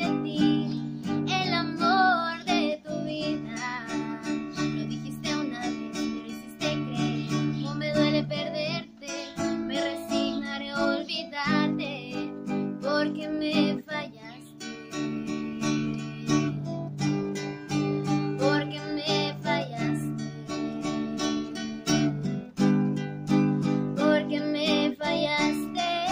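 A woman singing a Spanish-language song, accompanying herself on a strummed acoustic guitar.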